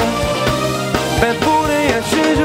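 Live pop band playing: regular drum-kit hits under a held, gliding melody line.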